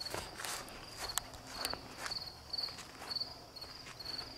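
Insects chirping in a high, pulsed trill that repeats about twice a second, with a few footsteps in the first couple of seconds.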